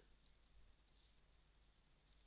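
Near silence with a handful of faint clicks in the first second or so, from computer keys being typed.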